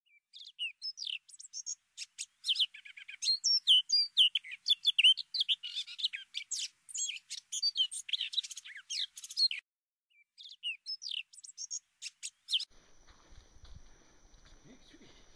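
Bird calls: a busy run of short chirps and quick rising and falling whistled notes, with a short pause about ten seconds in and a stop near the end.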